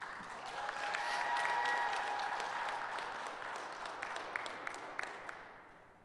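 Audience applauding, swelling in the first second, then dying away over the last second or so, with a few separate claps standing out near the end.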